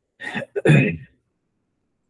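A man clearing his throat once, a short two-part 'ahem' lasting under a second.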